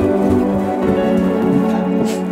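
Background music of slow, held keyboard chords at a steady level.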